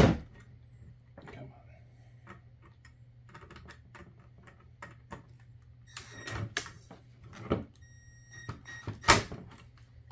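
Cordless drill-driver tightening the terminal screws on a power supply's terminal block to fasten a wire's spade terminal: short runs of the motor with a brief whine just before a sharp knock near the end, among clicks and knocks of the bit and terminal. Another sharp knock comes right at the start.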